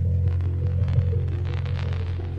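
Live jazz trio music from guitar, bass and drums: a loud, steady low drone underneath, short stepping melodic notes above it, and light drum and cymbal hits.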